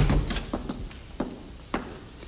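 Radio-drama sound effects: a door shutting with a thump, then footsteps on a hard floor at about two steps a second.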